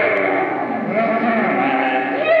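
Loud live noise-rock band sound: a wavering, wailing pitched line bends up and down over a dense, noisy wash, with no clear drum beat.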